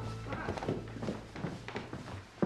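Quick, light footsteps of a child running down a wooden staircase, several knocks a second, over background music.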